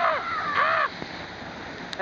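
Two loud shouted calls from a group of people about half a second apart, over the steady rush of a waterfall; after the first second only the waterfall is heard.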